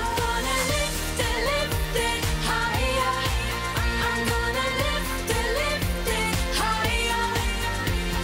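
Dance-pop song performed by a girl group: female vocals over an electronic backing track with a steady beat and heavy bass.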